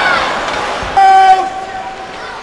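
A horn blares one steady note about a second in, loud for under half a second and then fading, over fading crowd noise.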